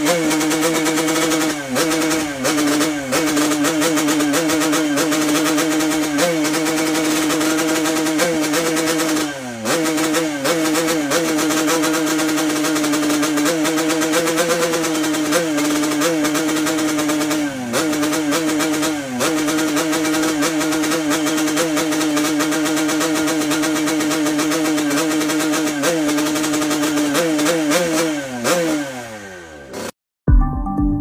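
Yamaha RX-King two-stroke single-cylinder motorcycle engine revved hard through its expansion-chamber exhaust, held at high revs with brief dips in pitch every few seconds as the throttle is eased and snapped open again. Near the end the revs fall away.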